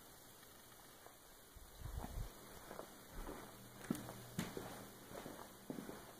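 Faint handling noise and footsteps while a handheld camera is carried across a room: a low thump about two seconds in, then scattered soft knocks and clicks.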